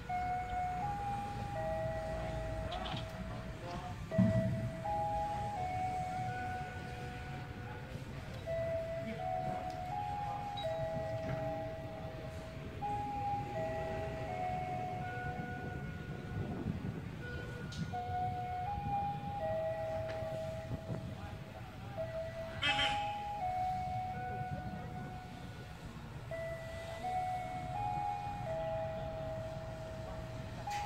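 A simple electronic chime tune from a railway station's public-address system: a short phrase of plain steady notes that repeats over and over. A low rumble runs beneath it, with a thump about four seconds in and a brief hiss a few seconds before the end.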